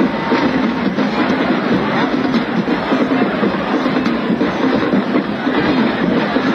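Marching band performing on the field, heard as a loud, dense, steady wash with no clear tones. The old videotape transfer distorts it heavily.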